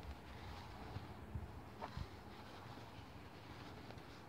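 Faint handling sounds of crocheting slip stitches with a hook and wool yarn: a few soft knocks about a second and a half to two seconds in, over a low steady hum.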